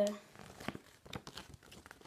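Teamcoach trading-card packaging crinkling and crackling in irregular bursts as it is handled.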